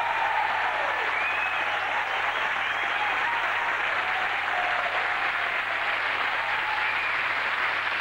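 Studio audience applauding steadily, with a few faint voices rising over the clapping.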